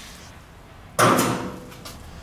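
A single sudden knock about a second in, then a short ringing fade: a heavy steel jet-drive impeller being set down on a platform scale for weighing.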